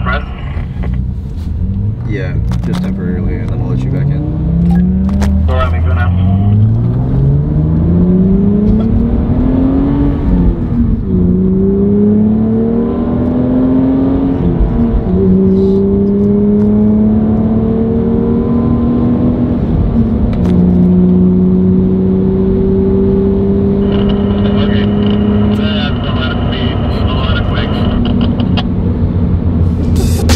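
Car engine heard from inside the cabin, rising in pitch as the car accelerates, with several upshifts where the pitch drops suddenly. Over the second half it runs steadily at cruising speed.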